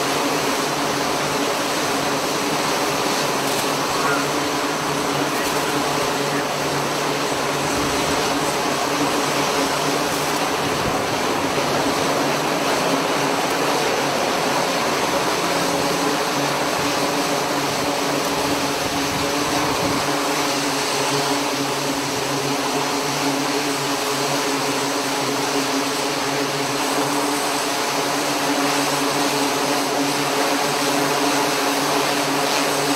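Navy Seahawk helicopter's turbine engines and rotor running as it lifts off from a carrier flight deck: a steady loud rush with a constant multi-tone hum, the deep low rumble dropping away about two-thirds of the way through.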